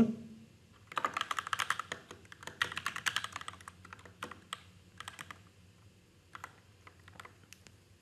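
Typing on a computer keyboard: a quick run of keystrokes starting about a second in, thinning after about four seconds to a few scattered key presses near the end.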